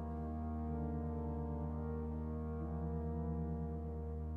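Slow instrumental music of sustained low chords held steadily, with a softly pulsing note in the middle range that comes and goes.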